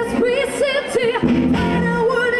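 Rock band playing, with a woman singing long, wavering notes with vibrato over electric guitar and drums.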